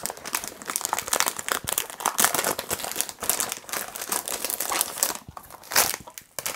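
Clear cellophane wrapping being peeled and crumpled off a perfume box, crinkling irregularly the whole time, with a louder crackle near the end.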